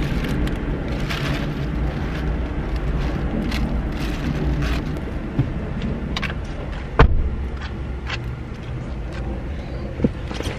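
Bags being handled inside a car, with rustling and small knocks over a steady low rumble, and one sharp clack about seven seconds in.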